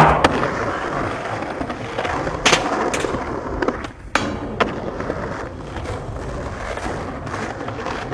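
Skateboard rolling on stone paving, with sharp board pops and landings: a loud impact at the very start, more cracks around two and a half to three seconds in, and a rattly cluster of hits near four seconds.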